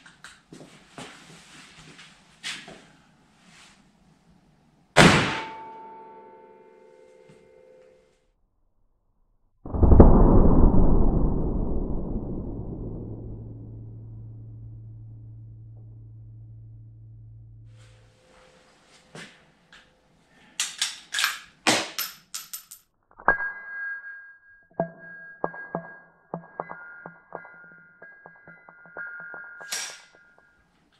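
A single sharp crack of a blank cartridge fired from an AR-15-style rifle at close range, with a ringing tail, about five seconds in. About ten seconds in comes the loudest sound: a much deeper boom that fades slowly over about eight seconds, the slowed-down slow-motion replay of the shot. Then a run of clicks and steady ringing, dinging tones near the end.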